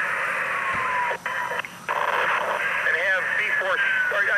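Fire department radio traffic heard over a scanner: a narrow, hissy channel with a slow wailing siren tone in the background and a few garbled voice fragments. The transmission cuts out briefly twice, a little after a second in.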